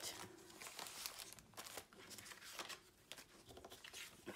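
Faint crinkling of clear plastic sticker sleeves and rustling of paper as scrapbook kit sheets are handled and stacked, in short scattered rustles.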